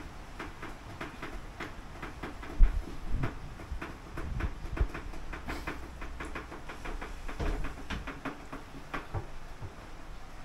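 Metal kitchenware clattering: a steel pot, its lid and a wire strainer knocking together in irregular clinks and taps while being handled, with one sharper knock about two and a half seconds in.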